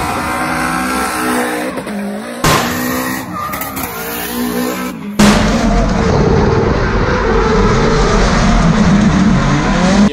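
Nissan S14 Silvia drift car's engine revving up and down with tyre squeal, in a string of short clips that cut hard about two and a half and five seconds in. The last clip, from inside the cabin, is the loudest, with the engine held at high revs.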